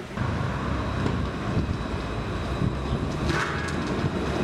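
Small hard urethane wheels rolling over pavement with a steady rumble, and a brief scraping hiss a little over three seconds in.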